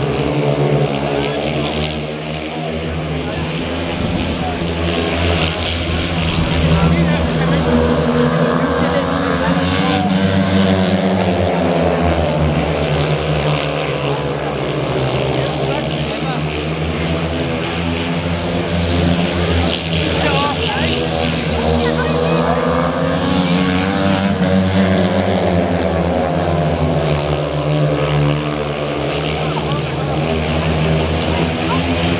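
Speedway motorcycles racing: a pack of four 500cc single-cylinder speedway bikes running flat out around the track, their engine pitch rising and falling again and again as they go down the straights and through the bends.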